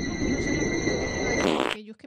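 A long, low, rough fart sound that cuts off near the end, with a faint steady high-pitched whine behind it.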